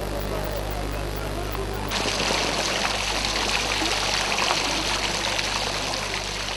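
Fountain water splashing, a steady dense rush that starts abruptly about two seconds in, over a steady low hum.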